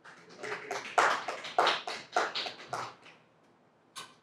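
A person moving up to a wooden pulpit: a quick run of taps and knocks, about four a second for some three seconds, then a single sharp click near the end.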